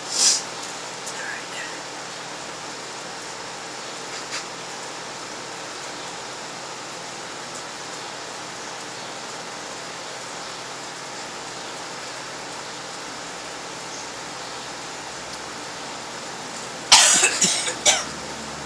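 A man retching and coughing harshly in a loud burst during the last second, doubled over as he gags on the raw-egg-and-mustard mix. Before it, a steady background hiss, with a short burst of sound right at the start.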